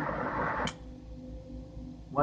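Carlisle CC glassworking torch flame running with a steady hiss, then shut off: the hiss cuts out suddenly with a click about two-thirds of a second in, leaving a faint steady hum.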